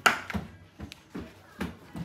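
A few light taps and knocks of kitchen handling as chocolate-coated cereal is scooped by hand from a plastic mixing bowl into a zip-top bag. The first knock, right at the start, is the loudest.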